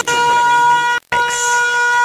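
A steady, sustained horn-like tone in a DJ mix, held at one pitch over a break where the bass and drums drop out. It cuts out for an instant about a second in.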